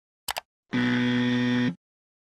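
Two quick clicks, like a mouse button, then an electronic buzzer tone held steady for about a second before it cuts off.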